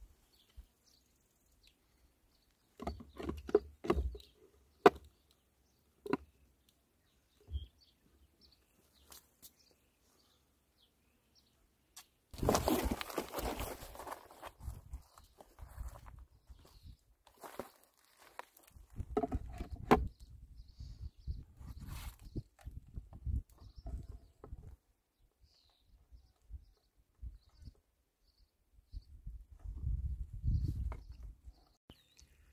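Intermittent hand-work sounds of plastic hose fittings and connectors being handled and fitted: scattered clicks and knocks, the sharpest about five seconds in. A rushing hiss lasts about two seconds around the middle.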